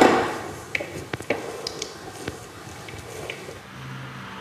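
A loud knock right at the start that dies away, then light scattered clicks and scrapes of a silicone spatula against a glass mixing bowl as beaten egg whites are folded into lemon cream.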